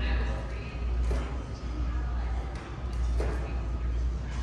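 Indistinct voices of people talking in a large hall, over a steady low hum.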